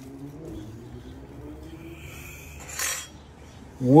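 Kitchen handling sounds as a slice of toasted bread is set on top of a stacked sandwich on a wooden board: faint clinks and one short scrape about three seconds in.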